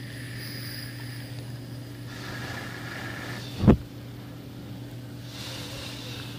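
A homemade e-cig mod being fired and drawn on. There is soft hissing for over a second, then a sudden puff of breath hitting the microphone about three and a half seconds in, then more hissing near the end. A steady electrical hum runs underneath.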